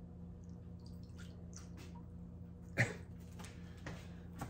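Steady low room hum with a few faint clicks and knocks from someone handling things out of sight, the sharpest knock a little under three seconds in.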